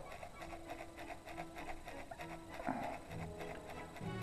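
A cloth rubbing with a very light touch in quick, even strokes on the polished leather toe cap of a motorcycle boot, about six strokes a second, over soft background music.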